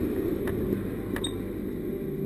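Footsteps, a few sharp clicks spaced about half a second to a second apart, over a low rustling rumble picked up by a helmet-mounted camera's microphone as its wearer walks.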